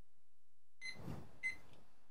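Two short high beeps about half a second apart, the second louder, over a faint steady background hiss.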